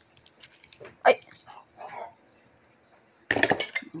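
Green jelly sliding and plopping wetly out of a plastic tub into a bowl of creamy salad mix, with scattered soft clicks, then a quick run of clattering near the end.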